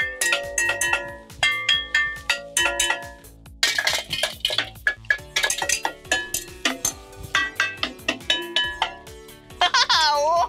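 Metal cooking pots and kettles hanging on a wall, struck with a wooden spoon and a metal spatula: a quick, uneven run of ringing clanks, each with a few clear tones.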